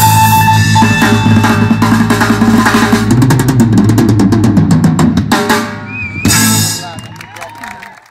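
Live rock band with electric guitar, bass guitar and drum kit playing loudly, building to a rapid drum roll about three seconds in. After a brief drop, a final crashing chord lands about six seconds in and rings out, fading as the song ends.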